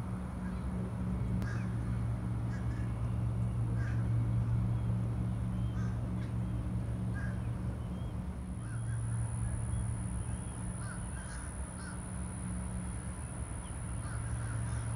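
Birds giving short, scattered calls over a steady low hum.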